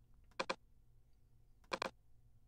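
Two computer mouse clicks about a second and a half apart, each a quick double tick, over a faint low hum.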